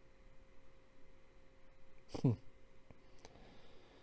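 Quiet room with a faint steady hum and a few soft clicks. About two seconds in there is one brief man's vocal sound that falls sharply in pitch.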